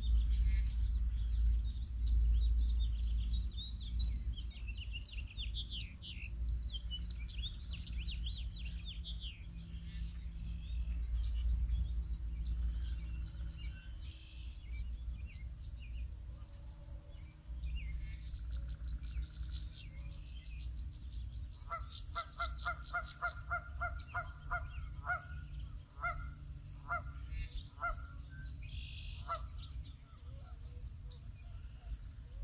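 Small birds chirping quickly and repeatedly over the first dozen seconds. In the second half comes a run of honking calls, several a second, from geese. A steady low rumble lies underneath.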